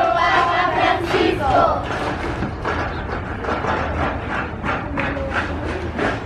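A group of schoolchildren shouting a greeting together, the voices holding a long call that breaks off with a few rising and falling cries in the first two seconds, then cheering with a run of quick, sharp claps.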